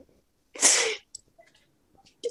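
A woman's single short, breathy vocal outburst, a hiss-like cry about half a second long, heard over a video call.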